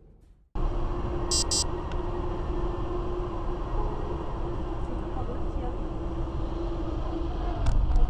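Car cabin noise recorded by a dash cam while driving through a tunnel: a steady rumble of tyres and engine with a constant hum, and two short high beeps about a second in.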